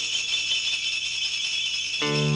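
A steady, high jingling rattle of shaken hand percussion, with nothing lower underneath it.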